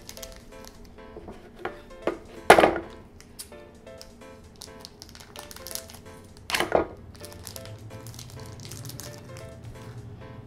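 Light background music with short repeated notes, over the handling of a plastic blind bag as it is opened. There are two loud, brief crinkling rips, about two and a half seconds in and again near seven seconds, with small rustles and clicks between.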